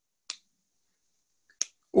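A pause with near-total silence, broken by a short, faint click about a third of a second in and another about a second and a half in. A louder brief sound comes at the very end as a man's voice begins.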